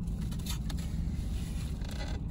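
Brief scrapes and rustles from handling a takeout food container, over a steady low hum inside a car.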